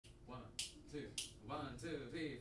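Finger snaps a little over half a second apart, three in all, with a quiet voice between them: a count-off setting the tempo for a jazz tune.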